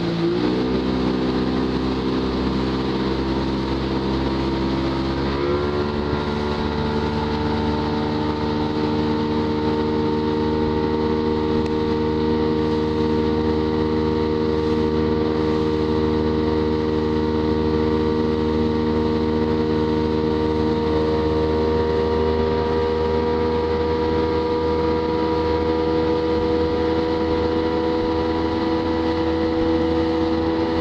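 Motorboat engine running steadily under load while towing, with water and wind noise underneath. Its pitch steps up about five seconds in and then holds.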